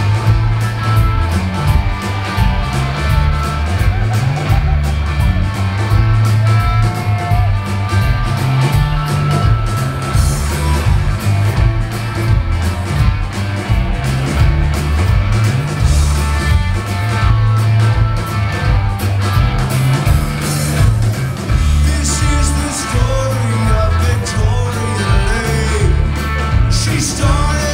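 Alt-country rock band playing live: electric guitars over bass and drums, with a strong pulsing bass line, recorded from the audience.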